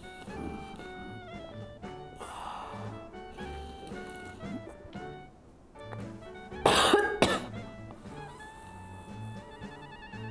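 Background music with a steady beat. About two-thirds of the way in, a person coughs hard twice in quick succession, choking on milk tea drawn up the nose from a spoon.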